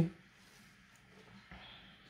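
An oracle card slid across a table top and set down, with a faint soft tap about one and a half seconds in; otherwise very quiet.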